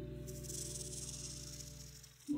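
A held keyboard chord in the background music, slowly fading. From a moment in, a high scratchy hiss of a felt-tip marker drawing on tufting cloth lies over it.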